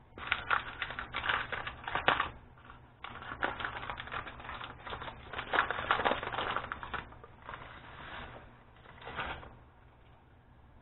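Cardboard box and paper inner pouch of Jiffy corn muffin mix being torn open and handled: dense runs of crackling, crinkling rustles in bursts for about seven seconds, then softer rustles near the end.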